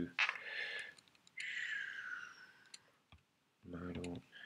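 A few light computer mouse clicks, with two breathy hisses in between, the second falling in pitch.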